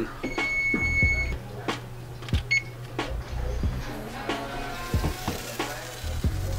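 Electronic oven timer beeping to signal that the food is done: one steady high beep about a second long, then a short beep about two and a half seconds in.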